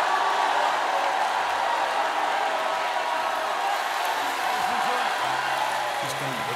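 A large congregation cheering, shouting and clapping together in praise, a steady wash of many voices and hands. Low sustained music notes come in near the end.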